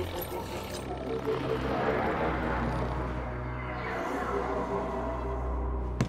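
Soundtrack of an animated series playing back: a steady low drone with held musical tones over it.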